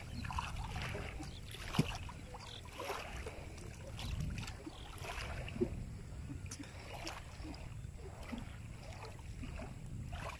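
Shallow river water splashing and sloshing as hands work under the surface, with a couple of sharper splashes or knocks, about two seconds in and again near the middle, over a low steady rumble.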